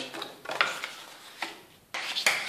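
Patterned cardstock being folded along its score lines by hand: paper rustling with a few short, sharp crinkles.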